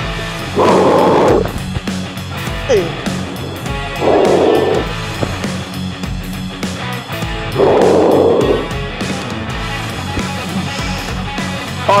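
Background workout music, with three loud breathy bursts about three and a half seconds apart: hard exhales timed with each dumbbell crunch.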